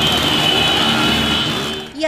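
Many motorcycle engines running and revving together in a dense, loud din, with a steady high-pitched tone held over it and a brief shout near the start. The din stops abruptly at the end.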